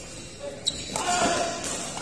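Badminton racket strikes on a shuttlecock during a doubles rally, the sharpest crack about two-thirds of a second in, echoing in a large hall, with voices in the background.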